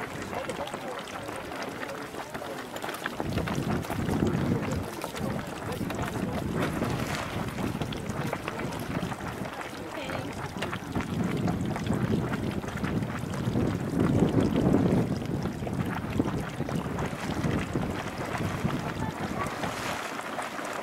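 Marmot Cave Geyser's hot spring pool pulsing and splashing at full pool, the splashing surging near the end as a small eruption bursts up. Wind buffets the microphone in low gusts from about three seconds in.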